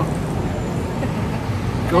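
Steady road traffic on a busy city street, a continuous low rumble of passing vehicles.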